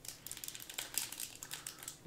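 Foil wrapper of a Panini Prizm basketball card pack crinkling as it is handled and torn open, a quick run of small sharp crackles.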